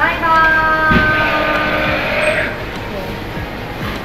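A person humming a tune: one held, slightly falling note of about two seconds.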